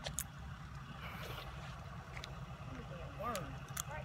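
Quiet outdoor background with a steady low rumble, a few faint clicks, and a man's voice briefly saying "right" near the end.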